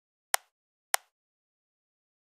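Two sharp computer mouse clicks a little over half a second apart, selecting a face in AutoCAD.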